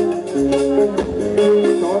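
A live band playing through a stage PA: electric guitars over a drum kit and hand percussion, with a singer's voice.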